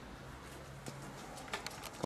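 Faint street ambience with a steady low hum, then a quick run of four or five sharp clicks near the end.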